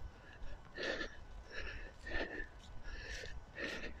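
Faint footsteps of a person walking on soft, soggy grass, about two steps a second.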